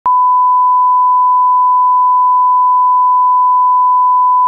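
Broadcast line-up test tone: a single steady 1 kHz sine beep at one unchanging pitch, played with colour bars, switching on with a click at the very start.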